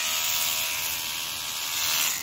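Battery-powered rotary cleaning brush with a tapered, harsh-bristled head spinning against a fabric convertible roof: a steady small-motor whine under the hiss of bristles scrubbing the cloth.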